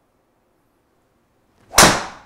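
A golf driver striking a ball: one sharp, loud crack near the end, with a short ringing tail.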